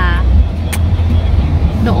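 Steady low rumble of a car's road and engine noise heard from inside the cabin while driving, with one short click a little before the middle.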